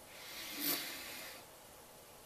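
A hissing draw through an e-pipe, an electronic cigarette shaped like a tobacco pipe, pulled while the device is firing. It lasts about a second and a half and is loudest midway.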